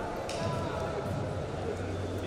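Indistinct voices calling out in a large sports hall, with a brief sharp burst near the start and occasional dull thuds, likely the wrestlers' feet and bodies on the mat.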